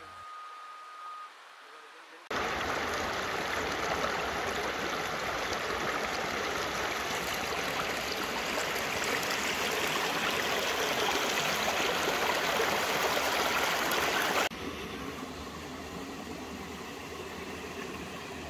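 Shallow river water rushing over rocks, a steady rush that starts abruptly about two seconds in and drops to a quieter rush a few seconds before the end.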